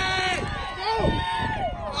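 Sideline spectators yelling encouragement in long, drawn-out shouts, several voices overlapping and rising and falling in pitch.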